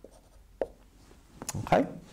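Felt-tip dry-erase marker writing on a whiteboard, a few faint short strokes and taps in the first second or so.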